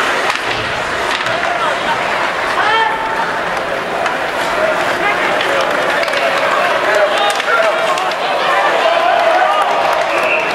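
Ice hockey arena crowd: many spectators shouting and talking at once, with scraping and clicks from skates and sticks on the ice.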